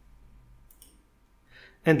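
Two faint, sharp clicks of computer input a little under a second in, in a quiet room, then a man's voice starting near the end.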